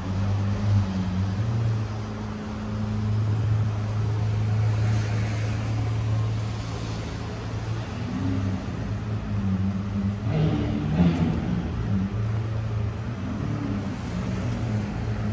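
Street traffic: a motor vehicle engine running with a steady low hum over general traffic noise, with a short louder patch about ten seconds in.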